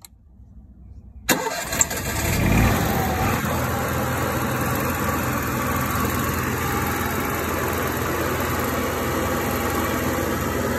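An RV's onboard generator, started from its panel start switch, catches about a second in with a brief surge and then settles into a steady run.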